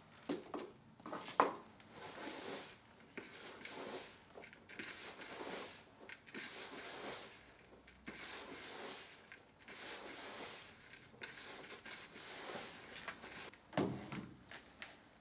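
Hands kneading and mixing damp groundbait clay in a plastic bowl: a few knocks near the start, then a run of rubbing, squelching strokes at roughly one a second.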